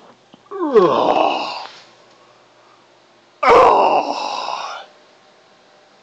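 A man making two drawn-out wordless groans, the first sliding down in pitch, the second starting suddenly about three and a half seconds in.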